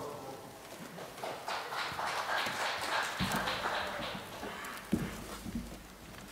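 Light clicks and knocks of hard-soled footsteps on a stage floor, with rustling. They are thickest through the middle, and there are a couple of heavier thuds.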